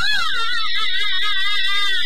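Chinese opera music: a high melody line with a wavering vibrato, held over light accompaniment.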